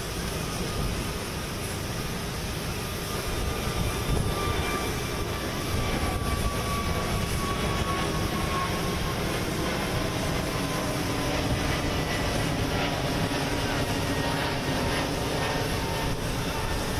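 Jet aircraft engine noise: a steady, even wash of sound with a faint whine that slowly drops in pitch.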